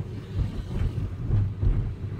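Car engine and road noise heard from inside the cabin while driving in traffic: a steady, uneven low rumble.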